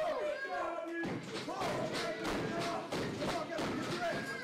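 Faint voices in a hall, with a run of dull thuds starting about a second in.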